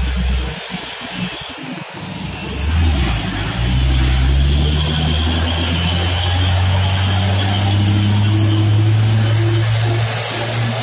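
Hino 500 truck's diesel engine pulling up a steep grade as the truck passes close by. The engine note dips at first, then rises about three seconds in and holds steady and loud.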